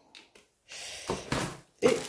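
A couple of faint clicks, then a soft breathy exhale lasting about a second.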